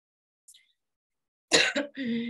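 A person coughing: a short burst of two or three quick coughs about one and a half seconds in, after a silent start.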